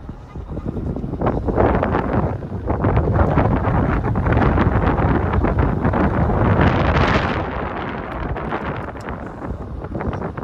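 Wind rushing over the microphone of a moving car, mixed with tyre and road noise. It builds about a second in, is loudest through the middle, and eases near the end.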